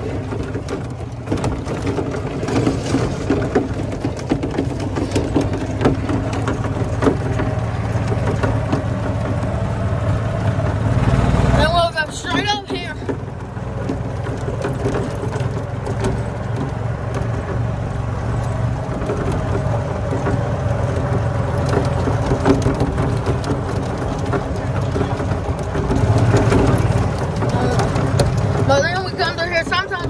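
Golf cart's engine running steadily as the cart drives along a dirt track, with a few brief words about twelve seconds in and again near the end.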